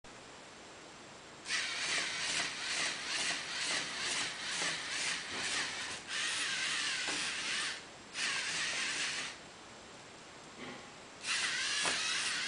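LEGO Mindstorms NXT servo motors and their gear trains whirring as the hexapod robot works its legs, in several runs of a few seconds each. The first run pulses about two to three times a second with the stepping, and there is a longer pause before the last run.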